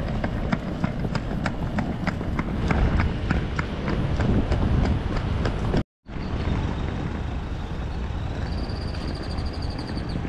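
Suitcase wheels rumbling over a paved sidewalk, clicking about four times a second over the joints. After a break, road traffic passes, and a cicada's high pulsing buzz starts near the end.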